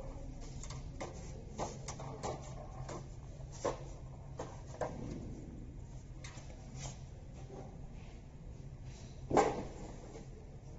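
Laminated plastic stick sachets handled in the fingers: scattered light crinkles and clicks, the loudest about nine seconds in, over a steady low hum.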